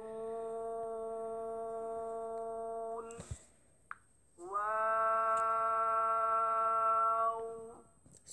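A voice drawing out two Arabic letter names in long, level-pitched tones, each about three seconds: first nūn, then, after a short knock and a pause, wāw.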